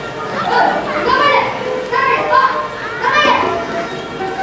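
Several children's voices talking and calling out on a stage, some words drawn out.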